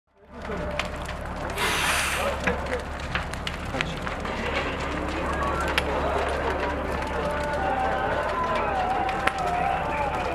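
A building fire burning, with frequent sharp crackles and pops from the burning structure over a steady low rumble. Voices of people at the scene run through it, and a brief loud hiss comes about one and a half seconds in.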